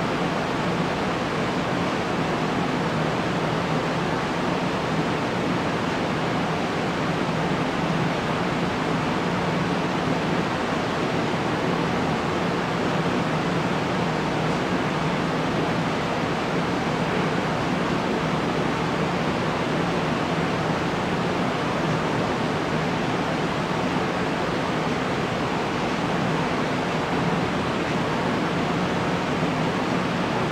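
A steady, even rushing noise with a faint low hum beneath it, unchanging in level.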